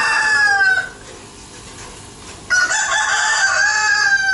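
Rooster crowing twice. One long crow falls away about a second in, and a second long crow begins about halfway through, with a falling tail at its end.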